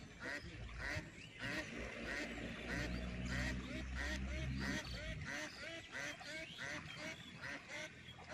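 A steady run of short animal calls, repeating two to three times a second. A low rumble is heard for a couple of seconds in the middle.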